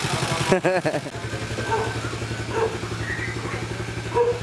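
Small motorcycle engine idling with an even, rapid low pulse, and a brief voice about half a second in.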